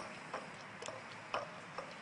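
A Goldendoodle licking frozen yogurt from a small bowl, heard as four faint short clicks about half a second apart.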